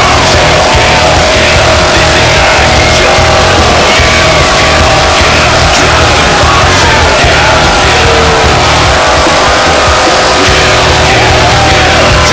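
Loud rock music, steady throughout.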